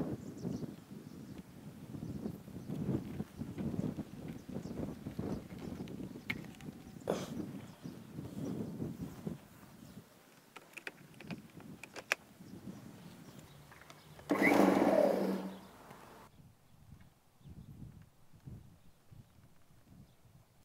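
Rustling and scattered clicks of a rubber-sheathed extension cable being handled, looped through the plastic hooks on an electric lawn mower's handle and plugged in. A louder sound of about two seconds comes about fourteen seconds in.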